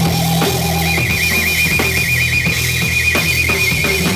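Live heavy blues-rock played by a guitar, bass and drums trio, with bass and drums pounding underneath. About a second in, the electric guitar holds a high sustained note with a fast, even vibrato.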